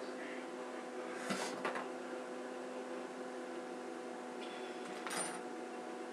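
Quiet room tone with a steady electrical hum, and faint rustles of hair being twisted by hand, about a second and a half in and again near the end.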